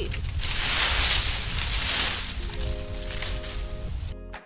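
Dry fallen leaves rustling loudly for about two seconds as hands scoop into a leaf pile and toss it. Soft background music comes in midway.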